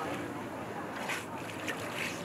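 Lake water settling just after a jumper's splash: a fading wash of falling spray and sloshing water, with a few small splashes about a second in.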